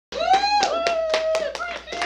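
Hands clapping about six times a second, with one long whooping cheer from a voice that rises and then holds, fading near the end.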